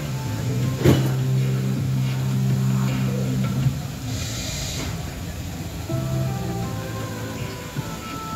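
Soundtrack of the Rainforest Cafe volcano eruption show from outdoor speakers: sustained low music chords, with a sharp bang about a second in and a brief hissing rush around four seconds in.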